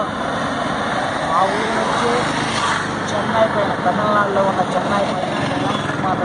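Road traffic passing on a highway: a steady run of car and truck noise under a man talking.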